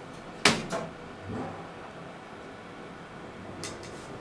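Mechanical clicks inside a KONE elevator car as it gets under way: a sharp loud click about half a second in, a second click right after, a softer thump a moment later, then two faint clicks near the end, over a steady low hum.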